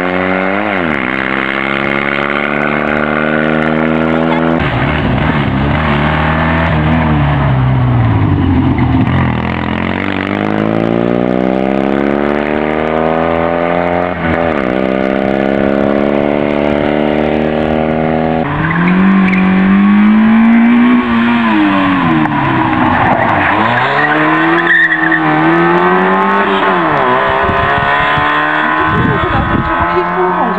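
Small rally cars, Fiat 126p among them, passing one after another on a stage, their engines revving hard and climbing in pitch through several gear changes. A louder engine takes over about two-thirds of the way through, with its pitch falling and rising as the car brakes and accelerates.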